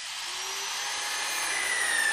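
Electric power drill running as it drills into an ATM, a high whine over a hiss that dips in pitch near the end.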